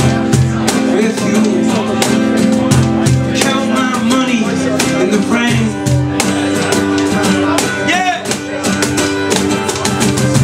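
Acoustic guitar strummed hard in a steady rhythm, played live, with singing over it.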